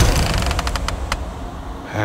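Film trailer sound effects over a cut to black: a low rumble fades away, with a few sharp ticks in the first second.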